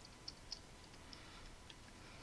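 Faint typing on a computer keyboard: a few soft keystroke clicks at irregular intervals.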